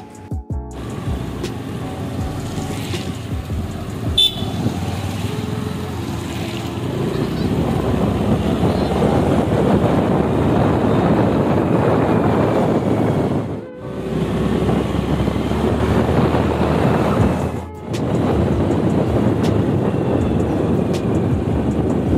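Rushing wind and road noise from riding a scooter along a rain-wet road, steady and loud, dropping out briefly twice in the second half.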